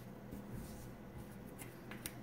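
Small wooden letter tiles sliding and tapping on a wooden tabletop as they are set into place: a few faint clicks and scrapes.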